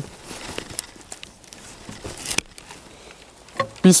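Faint rustling and handling of hand pruning shears among bare peach branches, with a few light clicks and one sharper click about two and a half seconds in.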